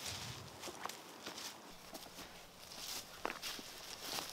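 Footsteps on a forest floor of dry leaves and thin snow: irregular scuffing steps, with a couple of sharp clicks about a second in and again near the end.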